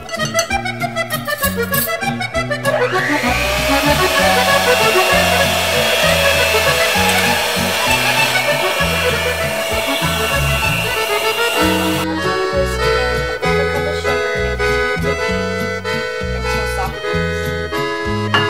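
Electric hand mixer running from about three seconds in until it cuts off abruptly about twelve seconds in, its beaters whipping egg whites in a glass bowl. Accordion background music plays throughout.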